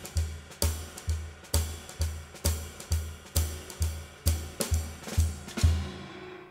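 Solo drum kit playing a jazz shuffle with sticks: a swung ride/hi-hat and snare pattern over a bass drum on every beat, a little over two beats a second.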